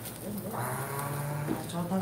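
A man's voice holding one long, level-pitched vocal sound for about a second, then speech beginning near the end.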